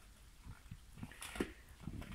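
Large rottweiler-mastiff-coonhound mix chewing a whole frozen raw chicken carcass: irregular crunches and clicks of teeth on frozen bone, a little louder a little past the middle.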